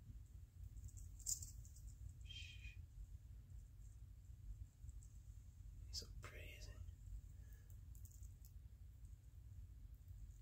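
Near silence over a steady low room rumble, broken by a faint whisper twice, a short one about two seconds in and a slightly longer one around six seconds in, and a single light click about a second in.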